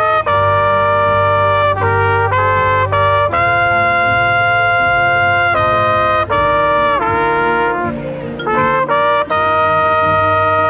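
Trumpet played close up within a marching band's brass section: a melody in sustained notes that change pitch in steps, several held for about two seconds, with a short break about eight seconds in before the line resumes.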